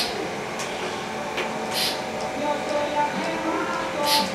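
Speech: a man's voice, low and indistinct, with a few sharp hissing s-sounds.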